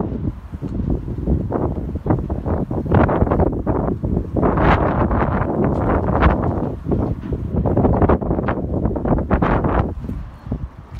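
Wind buffeting the phone's microphone in irregular gusts, a loud rumbling rush that comes in suddenly and keeps surging.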